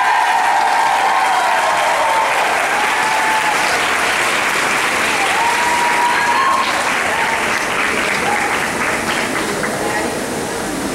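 Audience applauding and cheering after a dance performance, with high, drawn-out whoops during the first two seconds and again about six seconds in.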